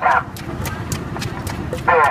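Wooden pestle pounding in a large wooden mortar: a quick series of repeated knocks, a few a second.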